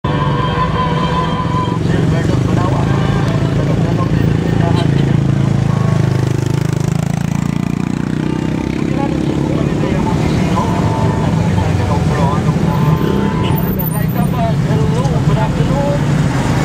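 A vehicle's engine runs while the vehicle is moving, its pitch dropping for a few seconds and then climbing again around the middle, as it eases off and speeds back up. Voices talk in the background.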